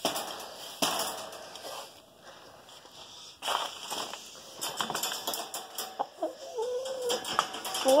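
Sharp clicks and rattles of a wire dog crate and rustling of pine-shaving bedding as a white rooster moves about inside it. Near the end the rooster makes a short, low, wavering vocalisation.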